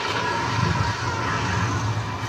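Film soundtrack of a building on fire, played back through a screen's speaker: a steady roar of flames with faint wavering tones above it.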